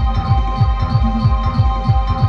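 Live band music: a fast, heavy bass-drum beat, about six strokes a second, under steady held high notes.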